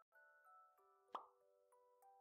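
Faint intro jingle of layered, sustained chiming notes, with a single sharp cartoon pop sound effect a little over a second in, the loudest sound.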